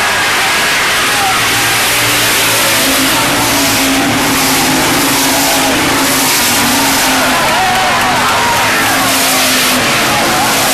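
Hobby stock race cars running together around a dirt oval: a loud, steady engine note that wavers up and down as the pack goes by, with crowd voices underneath.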